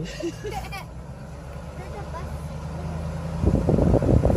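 A short laugh, then the low steady hum of a pickup truck heard from inside the cab. About three and a half seconds in, a loud rumbling rush of wind on the microphone sets in at the open window.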